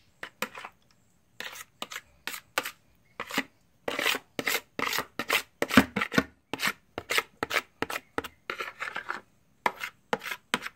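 Metal spoon scraping against a plastic bowl in quick repeated strokes, about two or three a second. The strokes grow louder a few seconds in.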